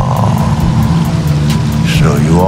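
Horror-montage soundtrack: a loud low drone with a held higher tone over a fast, steady ticking beat.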